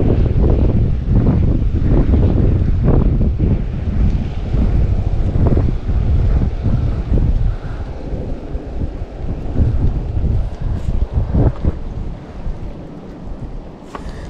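Wind buffeting the microphone: a loud low rumble that comes in uneven gusts and eases over the last few seconds.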